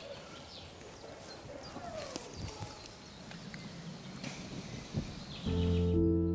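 Faint outdoor background with a few scattered small sounds, then, about five and a half seconds in, background music with sustained low chords comes in and becomes the loudest sound.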